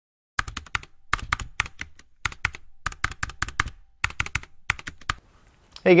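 Sharp clicks in quick bursts of three or four, like typing on a computer keyboard, stopping about five seconds in.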